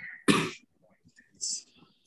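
A person's single short cough about a quarter second in, then a faint hiss.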